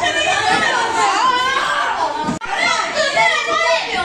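Several boys shouting and calling out at once, loud and continuous, with a sudden short break a little past halfway.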